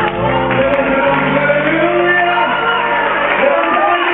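Gospel choir singing live over instrumental accompaniment with steady low notes, with voices shouting out over the music.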